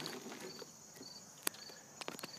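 Faint insect chirping: a short high chirp repeating about twice a second, with one sharp click about one and a half seconds in.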